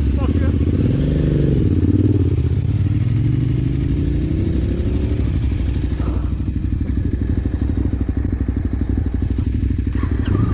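Adventure motorcycle engine revving and pulling away, its pitch climbing over a few seconds. About six seconds in, the engine settles to a steady, low-speed running sound.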